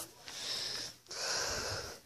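A person breathing close to the microphone: two audible breaths of just under a second each, without voice.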